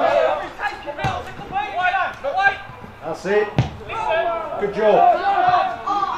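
Football kicked twice during play, sharp thuds about a second in and, louder, about three and a half seconds in, over voices calling across the pitch.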